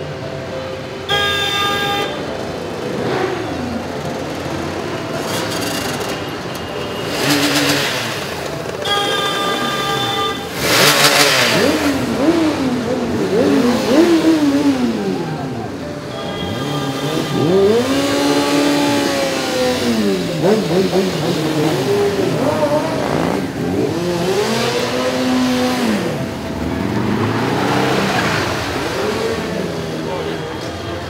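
Many motorcycles riding past slowly in a procession, their engines revving so the pitch rises and falls over and over. Two short steady horn blasts sound about a second in and again around nine seconds.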